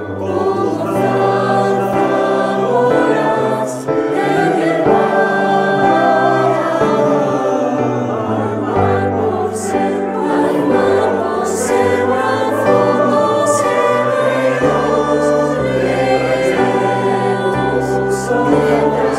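A mixed choir of men's and women's voices singing in harmony, holding long chords that change every second or so, with the low voices filling in more strongly near the end.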